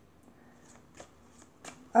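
Tarot cards being shuffled by hand: a few soft, faint card ticks.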